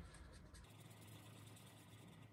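Faint scratching of a felt-tip marker on paper as a printed letter is coloured in, over a low steady hum.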